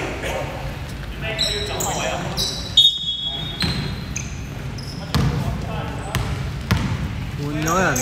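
A basketball is bounced a few times on a hardwood gym floor, and sneakers give short high squeaks, the loudest about three seconds in. Indistinct voices echo in the large hall.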